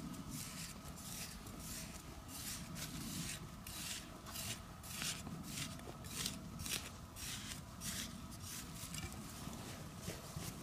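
Loose, dry soil being scraped and brushed away with a small trowel and fingers: a run of short, irregular scraping strokes, a couple or so each second.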